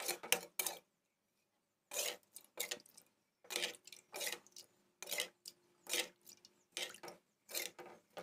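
Steel spoon scraping around the inside of a steel pan while stirring a curd mixture, in rhythmic strokes about one every three-quarters of a second, with a short pause about a second in.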